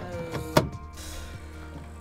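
Cordless drill driving a screw through metal roof trim. The motor's pitch falls as the screw bites, and there is a sharp knock about half a second in.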